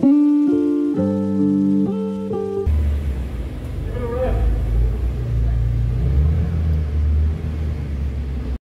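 Guitar music for the first couple of seconds, then an abrupt cut to a car's engine rumbling low in an enclosed concrete car park.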